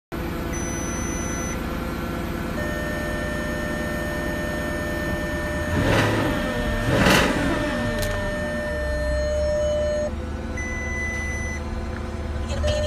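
Porsche Cayenne engine idling steadily, blipped up in revs twice, about six and seven seconds in, each rev rising and falling quickly. A thin steady beep sounds for about a second near the start and again near the end.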